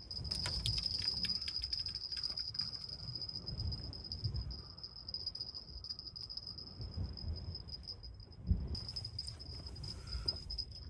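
A steady high-pitched insect chirring, like a cricket's, over low wind rumble on the microphone, with a few low knocks, the clearest about eight and a half seconds in.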